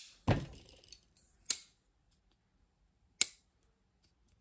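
QSP Capybara titanium frame-lock folding knife snapping open and shut on its detent: three sharp metallic clicks spread over a few seconds, the first with a short dull knock.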